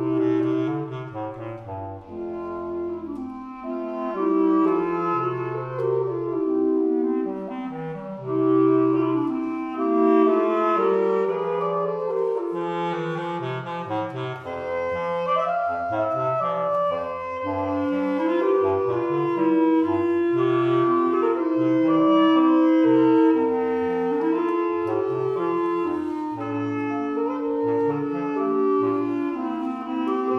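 Three wooden basset horns playing classical chamber music in three parts: a low bass line under held middle notes and a moving upper melody.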